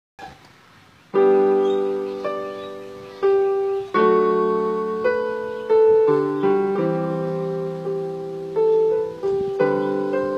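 Electronic keyboard on a piano voice playing a slow melody over chords, starting about a second in; each chord is struck and left ringing, fading before the next comes roughly every second.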